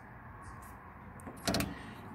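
Faint strokes of a squeegee over wet window-tint film, pressing soap solution and a bubble out from under the film, over a low steady background rumble. A short, louder sound comes about one and a half seconds in.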